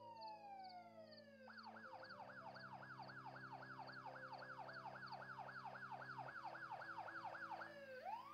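Faint emergency vehicle siren: a slow falling wail that switches about one and a half seconds in to a fast yelp of about four sweeps a second, which stops near the end as a new rising wail starts.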